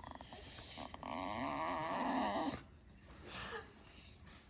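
Staffordshire bull terrier 'talking': a long, grumbling, warbling whine that wavers up and down in pitch and stops about two and a half seconds in, followed by a shorter, quieter one. It is the dog's demanding 'yelling', begging for its ball, which is stuck out of reach behind the couch.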